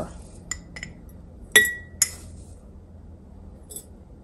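Metal kitchen spoon clinking against glass jars while scooping loose dried herbs into a mason jar: a few light taps, then a sharper ringing clink about a second and a half in and another half a second later.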